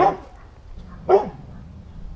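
A dog barking twice, one short bark at the start and another about a second later.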